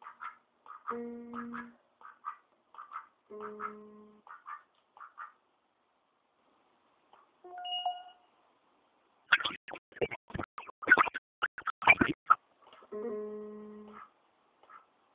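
Children's toy electronic keyboard sounding short held notes, one at a time, as an Indian Runner duck steps on its keys, with soft short duck calls in between. From about 9 s in comes a quick run of loud sharp knocks on the plastic toys.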